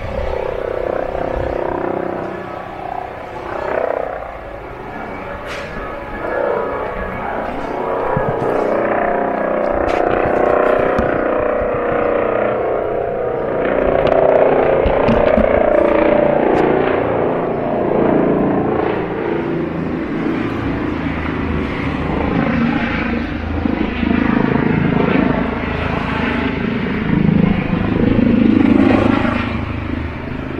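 Outdoor street ambience dominated by motor-vehicle engine noise that swells and fades, loudest about halfway through and again near the end.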